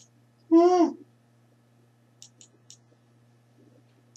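A person's voice: one short vocal sound, about half a second long and falling a little in pitch, about half a second in. A few faint clicks follow, over a low steady hum.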